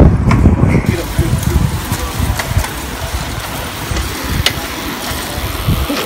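Wind buffeting the microphone of a phone carried on a moving bicycle: a loud, uneven low rumble, with a sharp click about four and a half seconds in.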